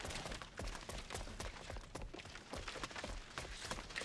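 Quick, irregular footsteps of several people running on a concrete driveway.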